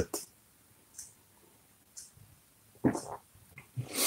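A man taking a short sip of tea about three seconds in, with a couple of faint clicks just after; otherwise quiet.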